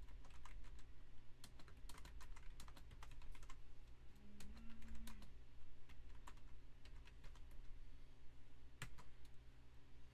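Typing on a computer keyboard: a run of irregular keystrokes for the first seven seconds or so, then a single louder click near the end, over a steady low hum.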